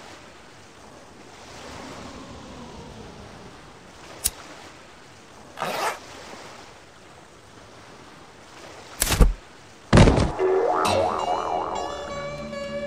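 A pause in the music filled with a steady noisy hiss, broken by a short click, a brief rush of noise and then two loud, sharp thumps about a second apart. A wavering, wobbling tone follows near the end.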